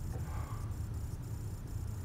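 Quiet room tone: a steady low hum under a high hiss that pulses about three times a second.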